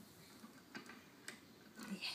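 A few faint, irregular wooden clicks and taps from a toddler's wooden activity cube as small pieces on it are handled.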